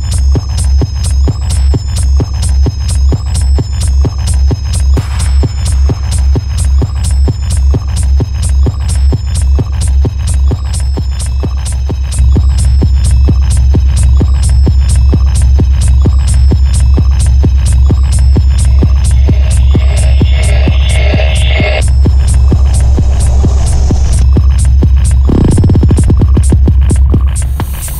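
Hard techno from a DJ mix: a steady kick drum at about two beats a second under a high, repeating synth figure. About halfway through, a heavy continuous bass comes in beneath the kick and the track gets louder. A short burst of mid-range noise runs for a couple of seconds and cuts off sharply near the end.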